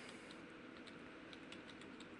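Faint computer keyboard typing: a quick run of light keystrokes as a single word is typed.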